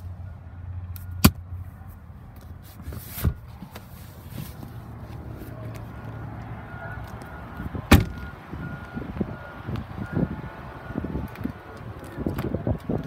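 Handling noises inside a Lincoln car: a sharp snap about a second in, a smaller knock around three seconds, and the loudest knock near eight seconds, with scattered small taps after it. From about seven seconds a faint electronic chime repeats in short, evenly spaced beeps.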